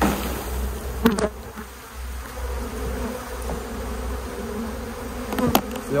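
Honeybees buzzing in a steady hum as they are shaken off a brood frame into a plastic bin. Sharp knocks of the frame being jolted come at the start, about a second in, and near the end.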